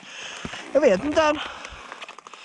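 Speech only: a voice says a few words about a second in, over a faint steady background hiss.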